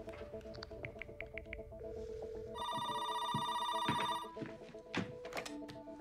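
A telephone rings once, a steady electronic trill lasting about a second and a half, starting a little before the middle. It rings over soft background music.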